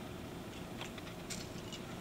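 Faint scattered clicks and scraping from a mid-span cable stripping tool being worked around the jacket of a thick LMR 900 coaxial cable, over a low steady hiss.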